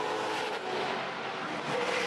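V8 Supercar race car at speed, heard from trackside as a steady, dense engine and tyre noise.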